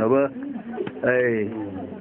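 A voice calling out in two drawn-out notes that rise and fall in pitch, about a second apart.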